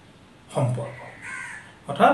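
A man's brief spoken syllable, then a single crow-like caw a little past the middle, with speech starting again at the end.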